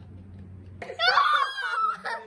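A person's high-pitched shriek with a wavering pitch, starting about a second in and lasting about a second.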